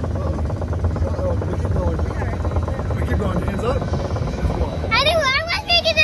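Roller coaster train running on its track: a steady rumble with a fast, even rattle. About five seconds in, riders scream and whoop in voices that swoop up and down.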